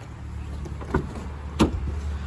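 The door of a BMW 2 Series Coupe being opened by its handle: a brief whir as the frameless side window drops slightly, then a sharp click of the door latch releasing about one and a half seconds in.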